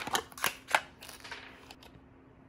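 A small paperboard carton being opened by hand: a few sharp papery clicks and scrapes in the first second, then lighter handling sounds as a serum bottle is taken out.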